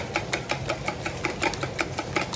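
Stainless wire whisk beating raw eggs in a plastic bowl, the wires clicking against the bowl in a fast, even rhythm of about seven strokes a second.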